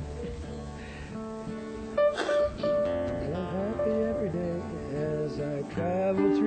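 Music with a strummed guitar playing held chords, some notes gliding in pitch.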